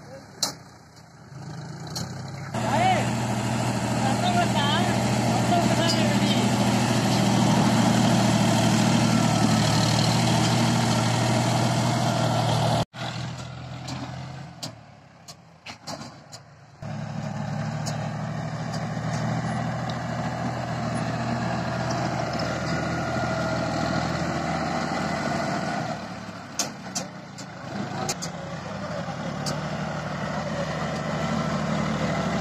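John Deere 5045 D tractor's three-cylinder diesel engine running steadily while the tractor pushes soil with a front dozer blade. The engine sound rises in level about three seconds in, breaks off sharply about 13 seconds in, stays quieter until about 17 seconds in, then resumes.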